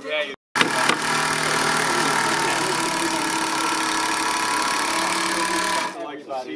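A motor running steadily and loudly, cutting in abruptly after a brief dropout about half a second in and stopping suddenly just before the end.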